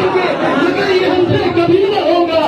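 A man's voice in a large hall, drawn out in a long melodic, chant-like line.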